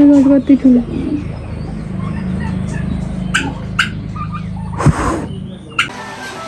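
A goat bleats once: one loud, steady call that wavers and drops away about a second in. After it comes a steady low hum, with a couple of sharp clicks and a brief thump near the end.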